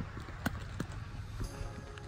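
A low rumble with a few sharp knocks, then background music fading in about one and a half seconds in.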